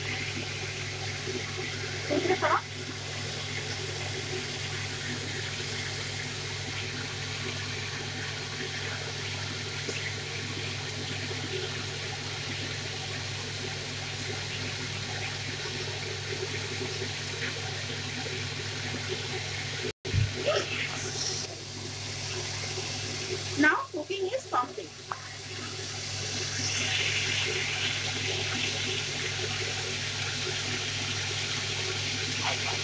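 Diced pumpkin frying in oil in an aluminium kadai, a steady sizzling hiss as it cooks down, with a few knocks and scrapes of a metal spatula against the pan, most around two thirds of the way through.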